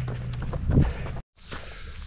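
Footsteps of a walker on a paved path with wind noise on the camera microphone, a few faint steps standing out. A little past a second in the sound cuts off abruptly and gives way to a quieter, steady high hiss of woodland insects.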